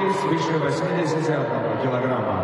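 A person talking, with no other sound standing out.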